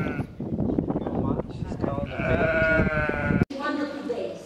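A sheep bleating: one long, wavering bleat about two seconds in, lasting over a second, which is cut off abruptly.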